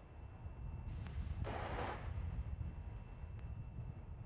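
Low wind rumble on an outdoor microphone, with a brief hiss about a second and a half in.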